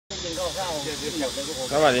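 A man's voice opening a greeting in Thai, "sawasdee", over a steady hiss.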